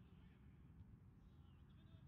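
Near silence: a low steady rumble with faint, distant voices calling.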